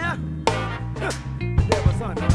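Drum kit played in a tight funk groove, sharp snare and cymbal hits over a backing track with a bass line and a voice.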